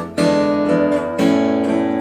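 Steel-string acoustic guitar finger-picked with no voice: an E7 chord rings, then an A chord is struck about a second in and left to sustain.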